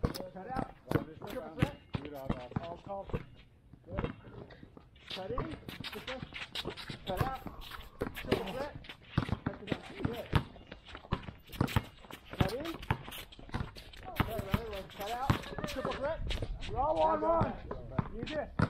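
Voices talking and calling over the repeated thuds of basketballs bouncing and footsteps on a gym floor.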